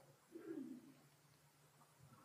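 Near silence: room tone, with one brief, faint low sound falling in pitch about half a second in.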